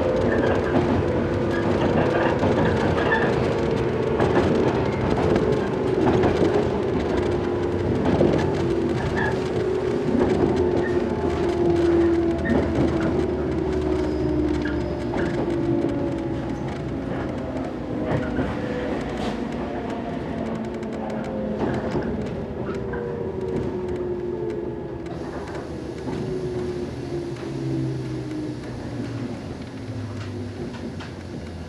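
Running noise heard inside a 115 series electric train as it slows for a station: the motor and gear whine falls steadily in pitch and the sound gets gradually quieter, over a constant rumble with clicks from the wheels on the track.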